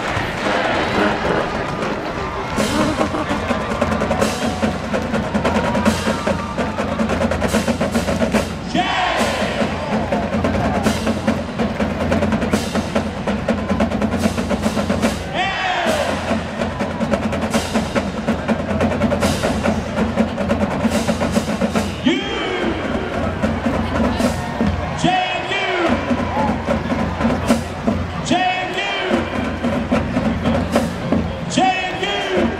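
A large college marching band playing on the field: brass carrying a tune over a drumline of snare and bass drums, with several sliding brass figures.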